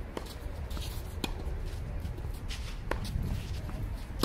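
Tennis balls struck by rackets in a doubles rally: three sharp knocks, roughly one to one and a half seconds apart. Between the shots, players' shoes shuffle and scuff on the artificial-grass court.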